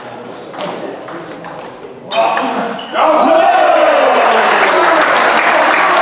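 Table tennis ball clicking sharply off bats and table in the closing strokes of a rally. About two seconds in, a shout goes up, and from about three seconds spectators applaud and cheer loudly as the point ends.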